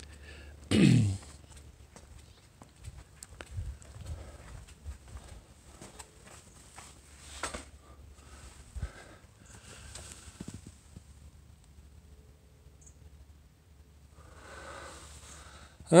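A man clears his throat once, a short sound falling in pitch about a second in. Then only faint scattered clicks and knocks of a handheld phone camera and footsteps as he walks, over a faint low hum.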